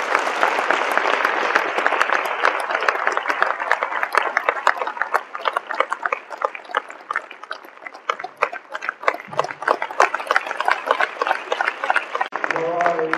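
Audience applauding: many hands clapping at once, heaviest at first, with the claps growing sparser toward the end.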